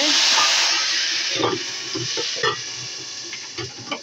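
Hot oil tempering (baghar) of fried onions, whole red chillies and curry leaves hitting a pot of kadhi, sizzling loudly at first and slowly dying down. There are a couple of soft knocks partway through.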